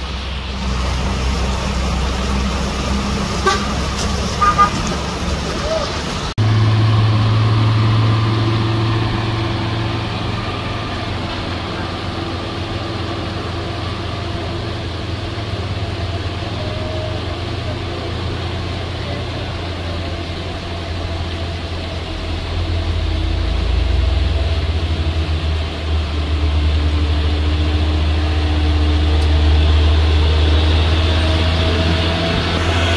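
Traffic on a wet mountain road with two short horn toots, then a loaded Mitsubishi Fuso truck's diesel engine pulling through a steep hairpin: a steady low drone that grows louder near the end as the truck comes close.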